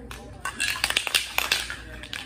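An aerosol can of white spray paint, nearly empty, being shaken so that its mixing ball rattles in a quick run of irregular clicks lasting about a second.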